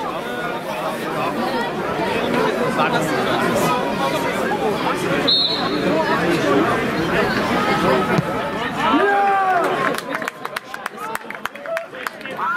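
Many voices at a football match talking and shouting over one another, a babble that grows louder. A brief high whistle note comes about five seconds in, and a few separate loud shouts near nine seconds.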